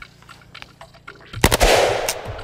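Galil ACE 32 rifle in 7.62×39mm firing about a second and a half in: sharp, loud reports in quick succession that ring on afterwards. Before the shots there are only faint clicks.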